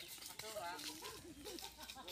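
Faint, distant voices of several people talking and calling to one another, with no clear words.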